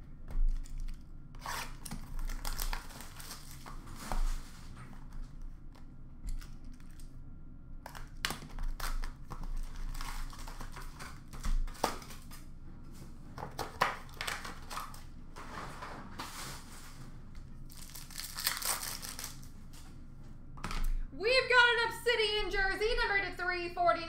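Hockey card packs being torn open and their wrappers crinkled by hand, in a run of short scratchy bursts with pauses between them.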